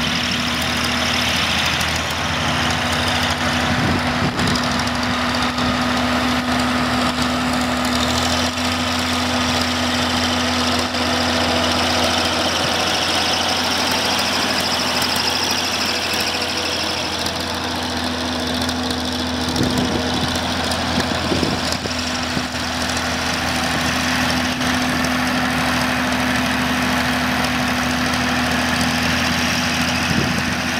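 Six-cylinder diesel engine of a 1966 Case 930 Comfort King tractor running steadily as the tractor is driven. Its low note shifts about eight seconds in.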